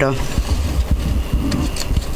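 Handling noise from drawing a raffle ticket out of a plastic bag on a desk close to a studio microphone: low bumps and a few faint rustles and clicks.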